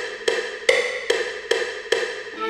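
Short, struck-sounding synth notes from a software instrument played on a MIDI keyboard, one every 0.4 seconds or so, five times, each ringing briefly and fading.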